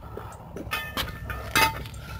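Steel jack stand being handled and set on concrete: a few sharp metallic clanks with a brief ring, the loudest about one and a half seconds in, over a low steady rumble.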